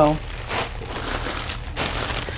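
Crinkling and rustling as vegetables are handled, an irregular crackly noise throughout.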